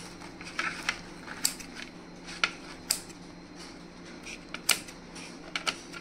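Kitchen scissors snipping through a folded roti quesadilla: a string of short, sharp, irregular snips and clicks, several seconds apart at most.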